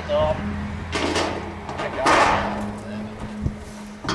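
Scrap metal clattering and scraping as pieces are handled on a scrap pile, in two noisy bursts about one and two seconds in, the second longer and louder. A steady low hum runs underneath.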